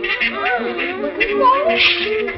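Several cartoon voices jabbering over one another, their pitches sliding up and down, with the cartoon's music score underneath.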